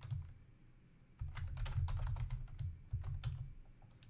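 Typing on a computer keyboard: a quick run of key clicks starting about a second in and lasting about two seconds, with a low thud under the keystrokes.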